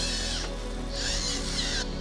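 Light rain pattering on grass and a small robot crawler, a soft hiss in two stretches that stops shortly before the end, over background music.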